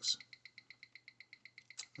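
A Seiko 8L35 high-beat automatic movement ticking at 28,800 beats per hour, about eight even ticks a second, picked up and played back by a timegrapher. The rate is steady and the movement is in good health: about +8 s a day, 291° amplitude, 0.2 ms beat error.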